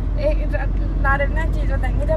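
A woman's voice, talking and laughing, over the steady low rumble of a car cabin on the move.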